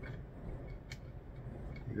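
Faint light clicks of metal parts being handled as an aluminium adapter plate is fitted onto a telescope mount's head, the clearest click about a second in.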